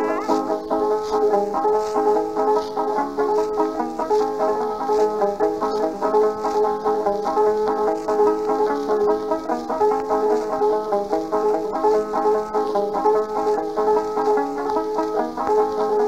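Solo old-time banjo playing a fast instrumental break, one high note recurring steadily through the quick picked melody. It has the thin, narrow sound of a 1920s 78 rpm record, with almost no bass.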